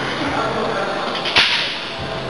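Gym background noise with voices in it, and a single sharp crack or clank about one and a half seconds in, the loudest thing here.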